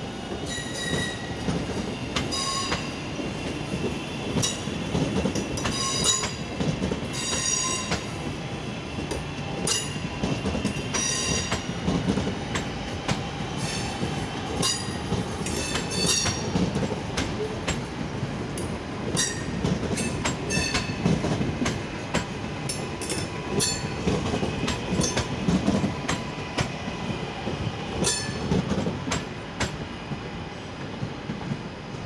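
Two coupled Class 323 electric multiple units running out through the station at low speed, with a steady rumble. Short high-pitched wheel squeals come again and again at irregular intervals, together with sharp clicks from the wheels over the rail joints and pointwork.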